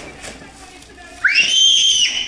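A young girl's high-pitched squeal of excitement, rising quickly and then held for nearly a second, starting a little past halfway. Before it, faint crinkling of foil gift wrap.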